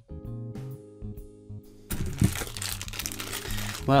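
Light lounge background music. About halfway through, a plastic bag of 50p coins starts crinkling loudly as it is handled, over the music.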